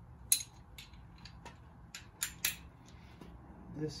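Ratchet wrench with an extension and spark-plug socket clicking and clinking as it is handled and fitted to a spark plug: about eight sharp metallic clicks at uneven intervals, the loudest about a third of a second in.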